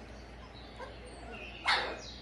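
A puppy gives one short, sharp yip near the end.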